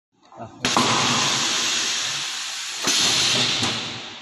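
Loud hiss of air from a soap logo stamping machine's pneumatic system, starting suddenly about half a second in, with fresh sharp blasts near the three-second mark and shortly after, then fading.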